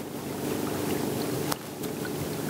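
Small outboard motor on a canoe running steadily at low speed, a low even hum, with one sharp click about one and a half seconds in.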